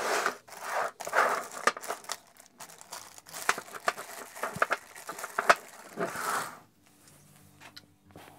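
Hands rummaging through a tray of small bolts and fixings: crinkly rustling with many sharp clicks of small metal parts knocking together. It stops about seven seconds in.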